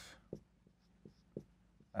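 A marker pen writing on a board: a handful of faint, short ticks and scrapes spread across two seconds.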